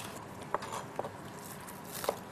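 Soft, faint handling sounds as wet wakame seaweed is pushed off a porcelain bowl with chopsticks into a pot of simmering soup, with a few light clicks about half a second in, about a second in and near the end.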